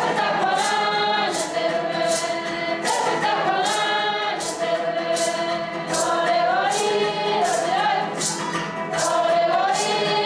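Background music: a choir singing a sustained melody over a steady light percussion beat of about two strikes a second.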